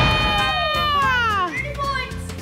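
Several voices cry out together in long calls that fall in pitch over about a second and a half, with shorter calls near the end, as a thrown ball flies toward the target.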